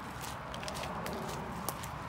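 Footsteps on a forest trail, with scattered light clicks and rustling and one sharper click near the end.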